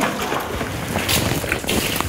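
FAM disinfectant being worked onto a rubber Wellington boot: a steady wet hiss and splashing, with a few faint scuffs.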